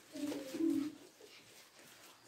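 Pigeon cooing softly: a few low coo notes in the first second, then near quiet.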